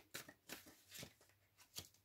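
Faint rustling and soft taps of tarot cards being handled, as a handful of short, quiet ticks spread over the two seconds.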